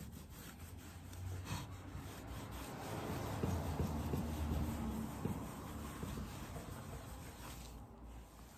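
Microfiber cloth rubbing MudPaint clear wax over a decoupaged board in a quick once-over, a steady scrubbing that is loudest in the middle and eases off near the end.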